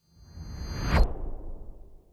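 Whoosh sound effect for a title-card transition, swelling to a sharp peak about a second in, then fading away.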